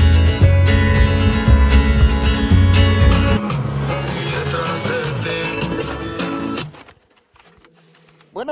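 Music with guitar and a heavy bass line. The bass drops away about three and a half seconds in, and the music cuts off suddenly near the end.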